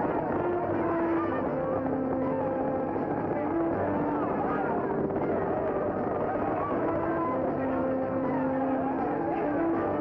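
Dramatic orchestral film score with held notes, over a crowd shouting and cheering and the rapid drumming of galloping horses' hooves.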